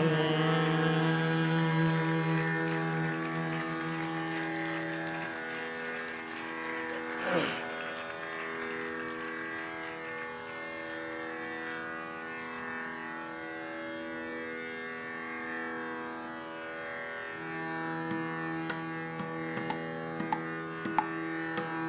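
Steady, sustained drone of tanpuras holding the raga's tonic after the sung phrase ends, with no singing over it. A short falling sweep comes about seven seconds in, and a few sharp taps near the end.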